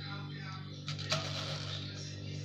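Control knobs on a halogen convection oven's lid being turned to set it: a couple of short mechanical clicks about a second in, over a steady low hum.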